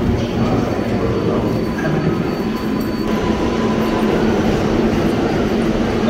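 New York City 7-line subway train running in the station: a loud, steady rumble, with a thin high wheel squeal held through the first half.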